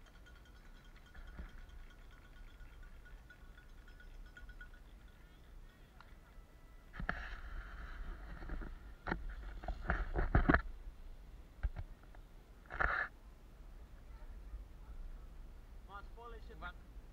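Faint voices over a low rumble, with a few short, louder calls in the second half.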